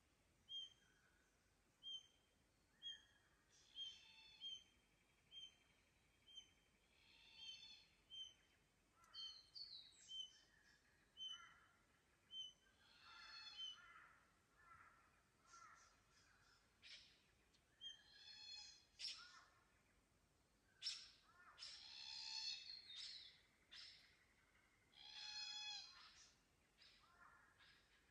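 Several forest birds calling faintly. One repeats a short high note about once a second through the first half, then other birds join with longer, fuller calls, the loudest near the end.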